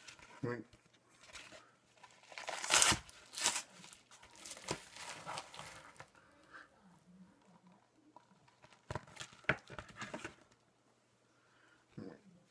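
A paper mailing envelope torn open by hand, with crinkling of paper and plastic packing. The loudest rips come about two to three and a half seconds in, then lighter rustling, and a few sharp crinkles around nine to ten seconds.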